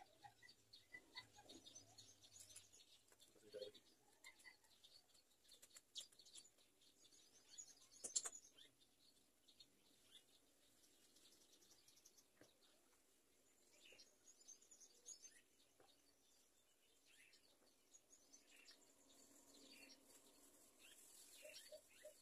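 Near silence with faint, scattered bird chirps and one sharp click about eight seconds in.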